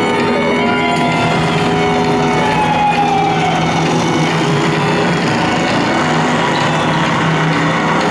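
Live rock band playing a loud instrumental passage: held sustained notes under a dense wash of sound, with a sliding tone gliding downward about three seconds in.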